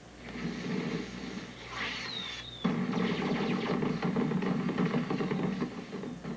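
A string of firecrackers lit and going off, heard as a cartoon sound effect through a TV speaker: a soft hiss with a short falling whistle, then from about two and a half seconds in a sudden, rapid run of crackling pops that keeps going, with music underneath.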